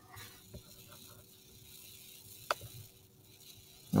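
Quiet room tone with a few faint ticks and one sharp click about two and a half seconds in.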